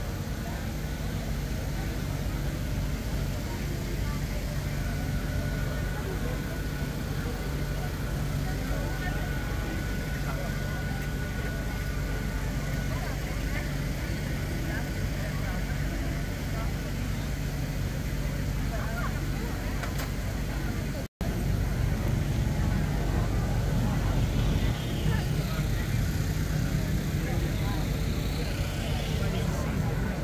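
Crowd chatter from many people talking at once, over the steady low engine hum of parked food trucks. The sound drops out for an instant about twenty-one seconds in, then carries on slightly louder.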